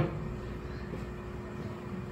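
Room tone in a small room: a faint, steady hum over low background hiss, with no other event.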